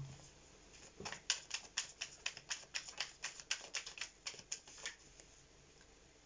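A tarot deck being shuffled by hand: a quick, even run of light card slaps, about six a second, starting about a second in and stopping shortly before the end.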